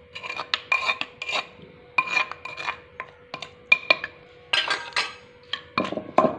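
A steel spoon scraping and knocking against the inside of a clay mortar full of chutney mash, in quick strokes about three a second, with a longer scrape shortly before the end. Just before the end it gives way to duller strokes of the wooden pestle pounding the chutney.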